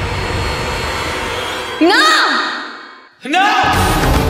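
Dramatic soundtrack: a low held drone, then two loud swooping stings about two seconds apart, each gliding up and then down in pitch. The first fades almost to silence before the second hits.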